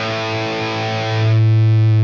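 Distorted electric guitar holding a single sustained note, with Blue Cat Audio AcouFiend generating synthetic amp-style feedback at the subharmonic setting. About 1.3 s in, a low feedback tone swells up under the note and becomes the loudest part, loud enough that it might even have clipped.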